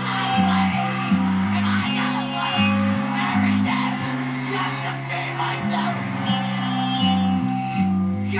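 Background music with a bass line that changes note about every half second.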